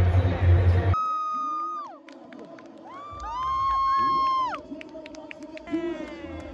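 A small group of people cheering and whooping, with one long, high 'woo' held for over a second about three seconds in, over faint chatter. Background music with a steady beat plays for the first second, then stops at a cut.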